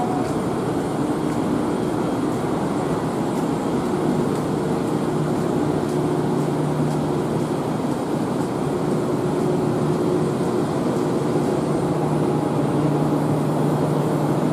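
Steady machinery hum and rumble from a stationary 1900-series tramcar waiting at a platform, with a lower steady hum joining about four seconds in.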